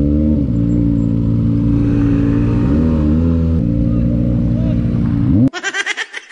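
Kawasaki sportbike engine revved and held at high rpm through the exhaust, with a brief dip and climb in pitch about three seconds in; it cuts off suddenly near the end, giving way to laughter.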